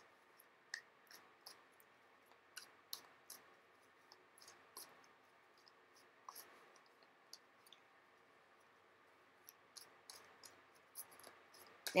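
Tarot deck being shuffled in the hand: faint, irregular clicks and flicks of cards, a few a second.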